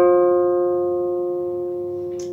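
A single F note plucked on a Selmer-Maccaferri-style gypsy jazz acoustic guitar, left ringing and slowly fading.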